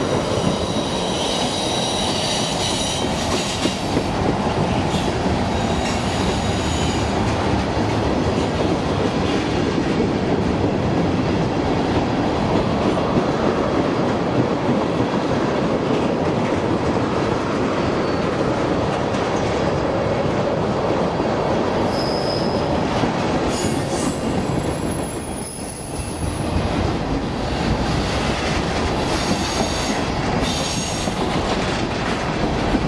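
Freight cars rolling past on curved track: a steady rumble of steel wheels on rail, with a few thin, high wheel squeals from the curve now and then. The loudness dips briefly late on before the rumble picks up again.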